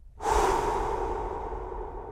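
A long, breathy exhale like a sigh, starting abruptly and slowly fading away.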